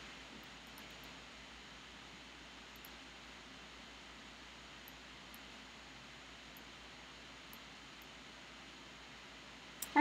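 Quiet room tone: a faint, steady hiss with no other clear sound.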